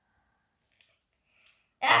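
A child's loud, breathy "ah!" near the end, after a quiet stretch broken only by a faint click about a second in.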